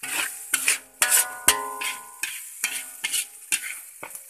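Metal spatula scraping and clanking against a metal wok while stir-frying fried rice and noodles, in quick uneven strokes, with the food sizzling. A hard strike about a second in sets the wok ringing briefly.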